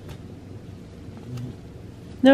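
A steady low hum of room noise, with a couple of faint light ticks and brushing sounds as a wand toy with ribbons is swept along a wooden floor.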